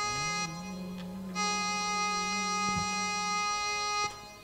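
Sustained organ-like chords held on a keyboard, with a low note sliding up into place at the start. The upper notes drop out for about a second, half a second in, then return and hold steady.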